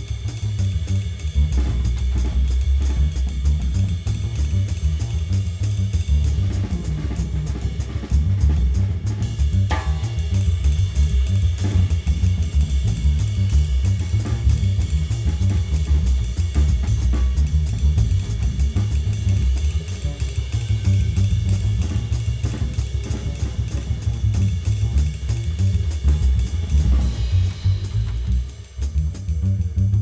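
Fast uptempo jazz swing on drum kit and upright double bass: a driving ride-cymbal pattern with snare and bass-drum accents over the bass line, playing rhythm changes.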